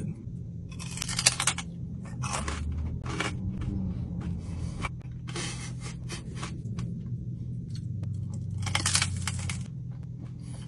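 Crunching of a large, crispy piece of chicharrón (fried pork skin) being bitten and chewed, in repeated bursts, the strongest about a second in and near the end. A steady low hum runs underneath.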